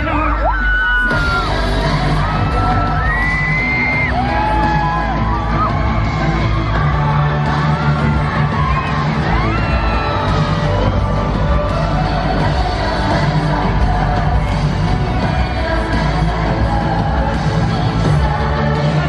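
Live pop music played loud through an arena sound system: a girl group singing melodic lines over a steady bass-heavy backing, with the crowd yelling along.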